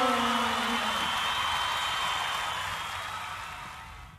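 Voices drawing out a falling note that trails off about a second in, over a hissing noise that fades steadily and then cuts off.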